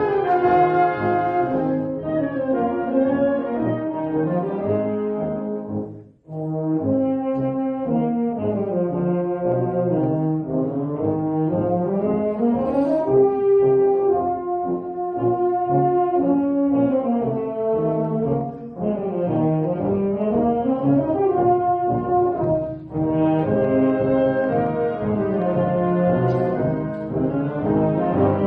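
Military concert band playing live, with the brass to the fore. The sound cuts out briefly about six seconds in.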